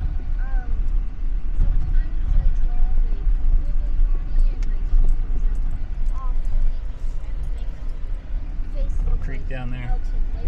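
Jeep driving slowly on a gravel road, heard from inside the cab: a steady low rumble of engine and tyres.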